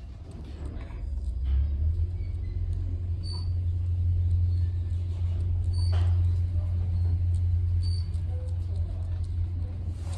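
Dover/Turnbull traction elevator, modernized by KONE, travelling down: a steady low rumble of the car in motion, building over the first couple of seconds as it gets under way and then holding level.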